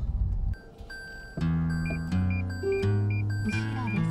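A car's parking sensor beeping in short repeated pairs, over background acoustic-guitar music that starts about a second and a half in. Before the music, low cabin road noise stops abruptly about half a second in.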